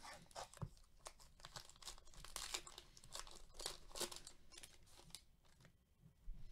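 A foil trading-card pack wrapper being torn open and crinkled by gloved hands, a run of quiet crackling tears that is busiest in the middle and dies away near the end.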